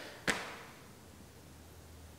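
A single sharp click about a quarter second in, fading quickly, then quiet room tone with a faint low hum.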